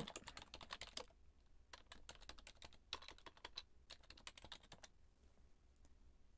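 Faint typing on a computer keyboard in four short bursts of keystrokes, stopping about five seconds in.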